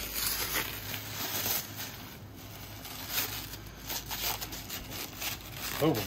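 Clear plastic wrapping crinkling and rustling in irregular crackles as it is handled and pulled off a lightsaber.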